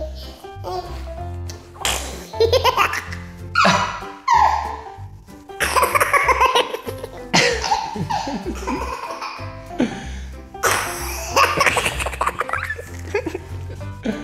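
A toddler laughing in repeated bursts over background music with a steady bass line.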